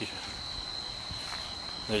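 Crickets trilling: one steady, unbroken high-pitched tone, with a man's voice starting right at the end.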